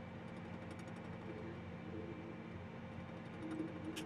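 John Deere tractor's diesel engine running steadily at a low 1,100 rpm, held down by the e23 transmission's eco setting while the tractor creeps forward at 3 mph. It is heard from inside the cab as a faint, even hum.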